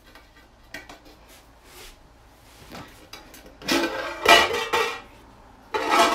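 Large aluminium cooking pot's lid scraping and clanking on the pot's rim as it is shifted and lifted off. There are a few faint clicks first, then two loud ringing scrapes in the second half.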